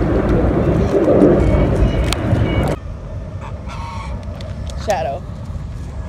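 A steady low rumble that cuts off abruptly a little under three seconds in, followed by a quieter stretch in which a goose honks near the end.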